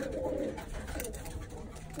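Birmingham roller pigeons cooing: a low, burbling coo, strongest in the first second and softer after.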